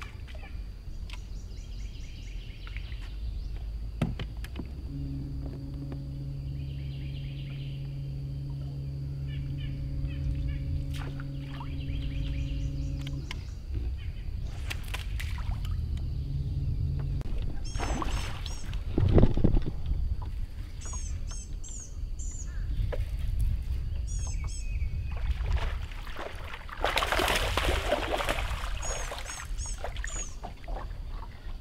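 Open-air ambience from a bass boat on a lake: a steady low rumble, with a low, even hum for about eight seconds early on. Birds chirp in the second half, and a louder rushing noise comes near the end.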